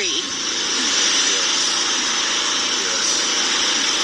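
A steady outdoor hiss with faint voices in the background, during a pause in speech.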